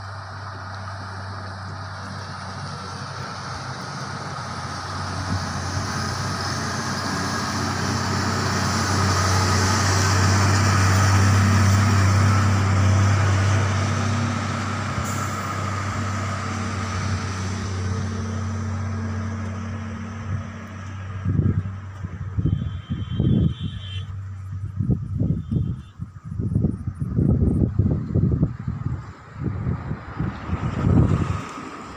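Heavy loaded goods truck's diesel engine droning steadily as it comes round the bend, passes close by and pulls away, loudest about halfway through and then fading. In the last third, irregular wind buffeting on the microphone.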